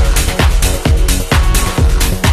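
Techno music: a steady kick drum at about two beats a second, with hi-hats and a sustained synth.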